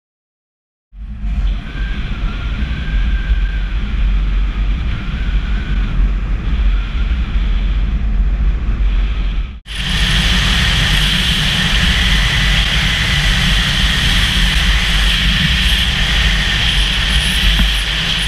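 Motorcycle running along the road, with heavy wind rumble on the camera's microphone. The sound starts about a second in, drops out briefly about halfway at a cut, and comes back louder.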